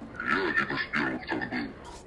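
A man speaking Russian.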